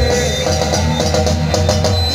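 Heavy metal band playing live: an electric guitar riff of short repeated notes over a drum kit, with no vocal line.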